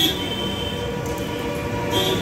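Steady metallic ringing with several held tones over a low background rumble, brighter and louder at the start and again near the end.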